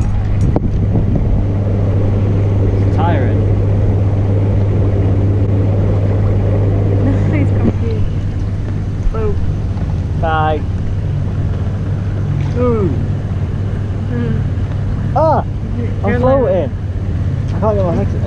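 Hot tub's pump motor running with a steady low hum under the churning of the jets. Short voice sounds that rise and fall in pitch come in from about three seconds in, most of them in the second half.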